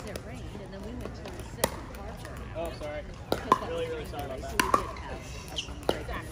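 Pickleball paddles striking plastic balls on the surrounding courts: about six sharp pops at irregular intervals, over faint voices.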